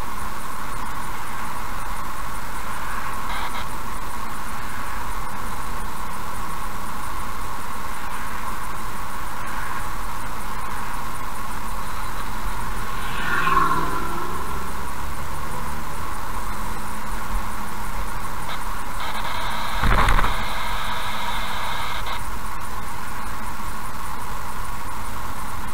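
Steady road and engine noise of a car driving at moderate speed, heard inside the cabin. A brief swell about halfway through, as a vehicle passes in the other direction, and a short thump a few seconds before the end.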